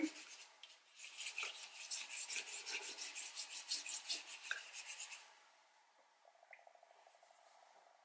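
Paintbrush scrubbing acrylic paint onto paper in quick, short, repeated strokes, several a second, faint and scratchy. The strokes stop about five seconds in.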